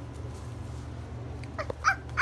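A small dog giving a couple of short, high whimpers near the end, over a steady low hum.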